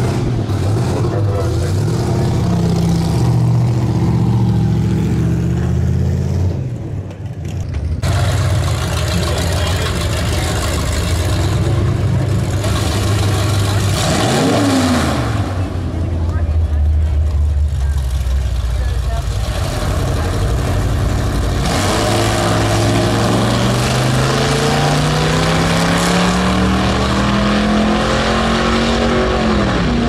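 Vintage drag-racing cars' engines running at full throttle down a drag strip; after a cut, an engine revs briefly at the line, then launches with one long, steady rise in pitch as the car accelerates away down the track.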